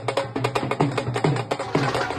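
Fast, steady drumming music: sharp strokes about five a second, with deeper beats that slide down in pitch woven between them.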